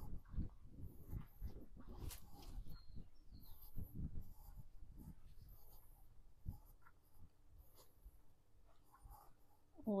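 Young piglets moving about and rooting in the dirt and straw of their pen: faint, irregular scratching and rustling with scattered soft low thuds.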